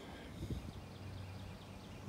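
Golf cart with a sprayer rig moving over a field: a low steady hum with faint light clicking and a soft thump about half a second in.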